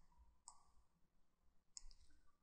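Two faint computer mouse clicks, one about half a second in and one near the end, against near silence.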